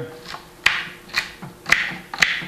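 Celery stalk being cut into small pieces: three crisp snaps about half a second apart.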